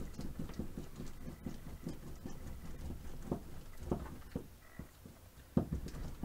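A flat plastic board rolled back and forth over a rope of soap dough on plastic sheeting: soft, irregular rubbing and rumbling, with a few light knocks about midway and just before the end.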